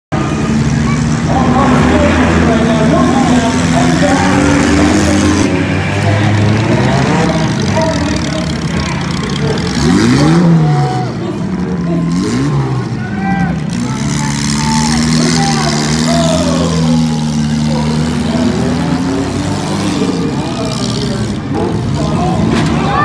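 Demolition derby cars' engines running and revving on a dirt arena, several at once. The engine pitch rises and falls sharply a few times around ten to thirteen seconds in.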